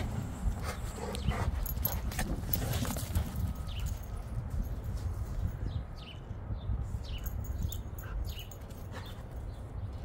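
Wind rumbling on the phone microphone, with scattered faint clicks and a few short, faint whines from the dogs.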